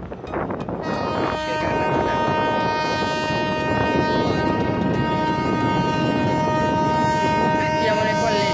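Horn of a multi-deck river passenger launch blowing one long, steady blast, a chord of several pitches, starting about a second in and held to the end, over a background of voices and harbour din.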